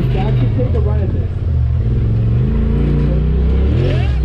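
Side-by-side UTV engine working hard to climb a rock ledge, its low note running under load and the revs rising toward the end. Spectators' voices can be heard over it.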